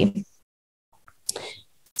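A woman's voice trails off at the end of a sentence, then after a short silence a brief breath is drawn in, just before she speaks again.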